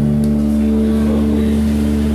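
A live band's instruments holding a chord: bass guitar, acoustic guitar and electric guitar ringing out in steady sustained notes, with no singing.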